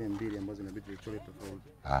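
People talking quietly over a steady low hum, with a louder voice coming in just before the end.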